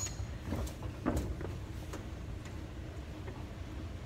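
Steady low rumble of indoor background noise, with a few faint knocks and brief faint voices in the first second and a half.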